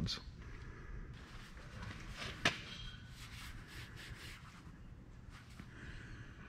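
Quiet handling of a threaded steel U-bolt rod being set in front of a hydraulic U-bolt bender's die: faint scattered knocks and rubs, with one sharp click about two and a half seconds in.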